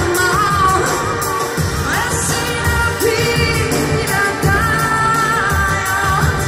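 A woman singing live with a band, her voice gliding between held notes over drums keeping a steady beat.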